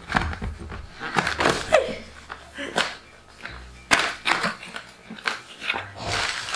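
Cardboard retail box of an LED gaming mouse pad being handled and opened by hand: a string of short, irregular rustles, scrapes and taps.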